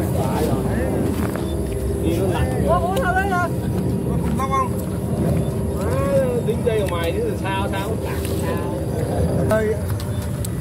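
Outdoor ambience: a steady low rumble with a constant low hum running through it, and people talking now and then in the background.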